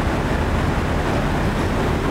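Steady industrial machinery noise, a continuous low rumble with hiss above it, from an MDF fibreboard plant's forming line as dried, glued wood fibre drops into the forming station.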